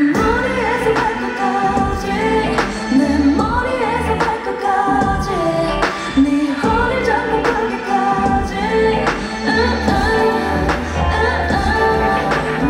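A woman singing live into a handheld microphone over a K-pop backing track with deep bass and drums, amplified through a concert hall's PA.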